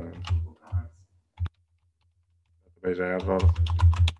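Typing on a computer keyboard: a few separate keystrokes in the first second and a half, then a quick run of keys near the end.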